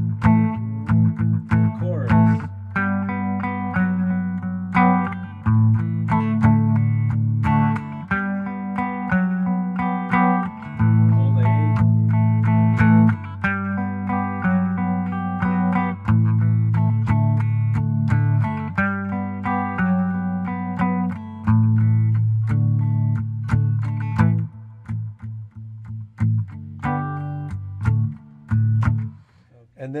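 Four-string tenor guitar tuned GDAE strumming chords in a steady rhythm: the A–G–D verse progression, then the G–G/F#–A–D chorus with its bass walk-down. The strumming thins out and gets quieter over the last few seconds.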